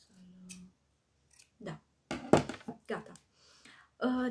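Small scissors snipping, a few sharp clicks building to a cluster of loud snips about two seconds in, trimming a stray bristle off a makeup brush.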